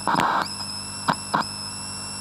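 Electronic track's glitch ending: steady high-pitched tones hold throughout, broken by a loud burst of static-like noise just after the start and two short noise blips about a second in.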